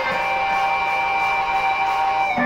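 Electric guitar holding one long sustained note, rich in overtones, between runs of quicker melody notes.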